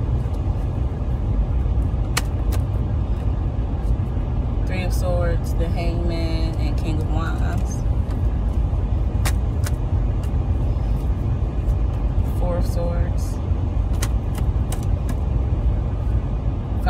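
Car engine idling, heard inside the cabin as a steady low rumble. Scattered light clicks come from a deck of tarot cards being handled and shuffled.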